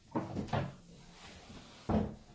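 A few knocks and clunks from objects being handled, the loudest a sharp thump near the end.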